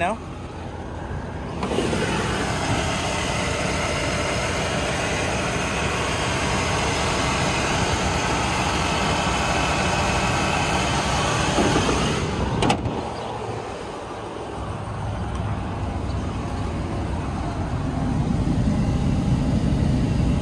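Chevy Tahoe's V8 engine running at idle, heard close up in the open engine bay, with one sharp knock about thirteen seconds in. After the knock it is quieter for a moment, then a low rumble builds.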